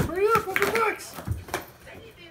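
A person's high, sing-song coaxing voice in the first second, with a sharp knock at the start and a few light knocks and a soft thud later, from a dog pawing and nosing at a cardboard box.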